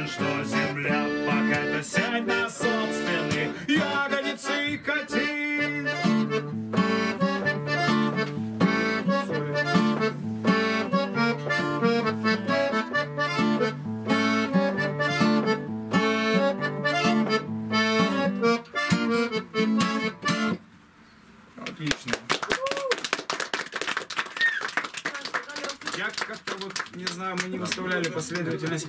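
A song played live on an acoustic guitar with a sustained, reedy chord accompaniment, which stops abruptly about twenty seconds in. After a brief hush, a small group of listeners claps.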